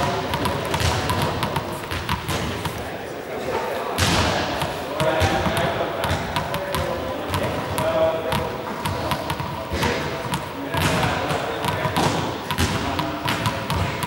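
Small juggling balls dropping and thudding on a sports-hall floor, several times at irregular intervals, with indistinct voices in the background.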